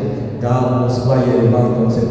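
Only speech: a man talking into a microphone in a low, even, drawn-out voice.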